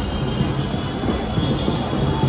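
Steady din of a busy street market with traffic.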